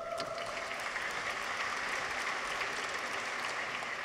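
Audience applauding: many people clapping at a steady level.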